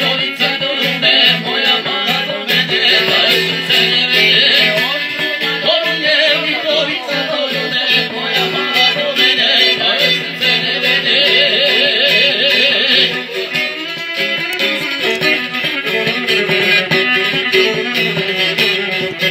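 Live folk music: a long-necked plucked lute and a violin accompany a woman and a man singing, the voices held with a wide, wavering vibrato.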